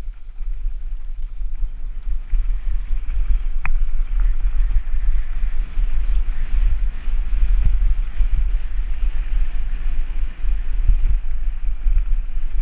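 Wind buffeting the microphone of a camera on a mountain bike riding fast down a rough dirt and gravel track, with steady tyre noise and a few knocks from the bike going over bumps. A sharp click comes a little under four seconds in.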